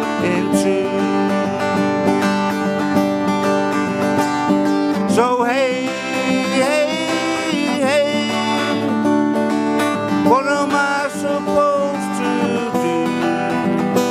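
Steel-string acoustic guitar strummed in a steady rhythm, with a man's voice singing long, wavering notes over it from about five seconds in and again briefly around ten seconds.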